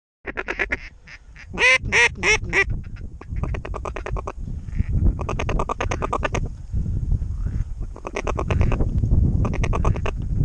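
Duck quacking: four loud, drawn-out quacks about a second and a half in, between fast chattering runs of quacks that come and go, over a steady low rumble of wind on the microphone.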